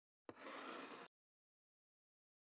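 Faint, brief sliding rustle of a record sleeve being pulled out from a tightly packed row of records, starting with a light tap and lasting under a second.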